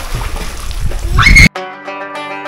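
Outdoor poolside sound with wind rumbling on the microphone and a brief rising shout, cut off abruptly about a second and a half in by background music of plucked strings.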